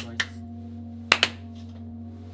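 Two hand claps about a second apart, each heard doubled as two people clap slightly out of step: the two ritual claps of Shinto prayer before a shrine altar. A steady low hum runs underneath.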